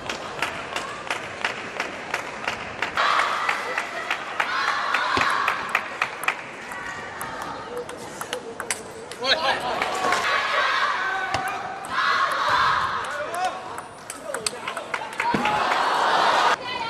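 Table tennis ball clicking sharply off rackets and table in quick rallies, with the arena crowd cheering and shouting in several swells between points.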